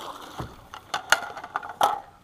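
A few sharp knocks and clatter as a bass is scooped up in a landing net and swung aboard a small fishing boat, the net, rod and thrashing fish bumping against the boat. The loudest knock comes about a second in, another near the end.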